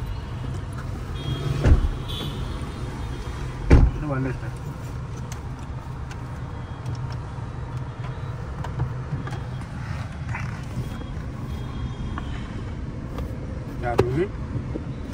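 Cabin noise of a BMW 2 Series M Sport petrol car driving in traffic: a steady low rumble of road and engine, with two thumps about two and four seconds in.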